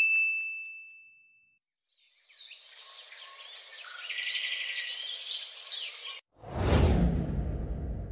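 A single bell ding at the start, one clear ringing tone that fades out over about a second and a half. After a short silence, birds chirp for about four seconds and then cut off abruptly. Wind rumbles on the microphone near the end.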